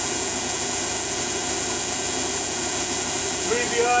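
Steady machine running noise from a three-phase alternator rig powering a wireless Tesla coil: an even, constant hiss with a fast flutter low down.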